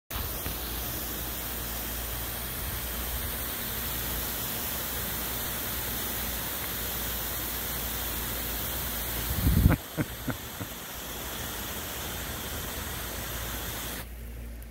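Steady hiss of a fine water spray falling. About two-thirds of the way in, a brief low thump, the loudest sound here, followed by a few short knocks.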